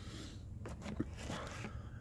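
Quiet rustling and a few light knocks and clicks of small objects being handled, with a sharp click about a second in.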